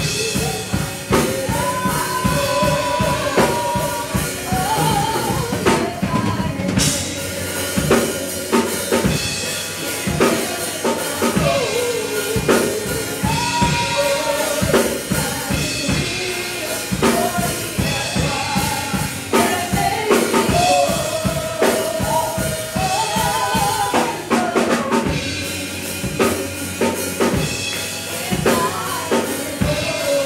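A live worship band: a Yamaha drum kit keeps up a driving beat with bass drum, snare and cymbals under keyboard chords, and a voice sings a wavering melody over them.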